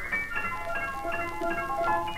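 Piano playing rapid high-register figures, several notes a second, with a lower note entering about a second in. It is heard from a 1938 mono 78 rpm shellac record playing on a turntable, with faint surface noise underneath.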